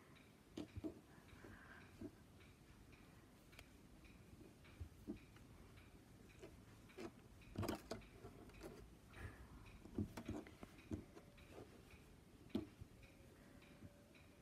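Near silence with faint, irregular clicks and soft handling noise from hands weaving knitted yarn strips and a knitting needle.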